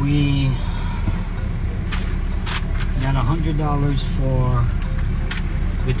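A man talking over the steady low rumble of a Ram pickup truck idling, heard inside the cab.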